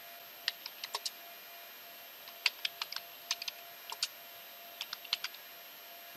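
Typing on a computer keyboard: short, separate key clicks in small irregular clusters with pauses between them.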